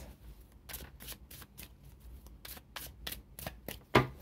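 Tarot cards being shuffled by hand: a run of short, irregular card flicks and slides.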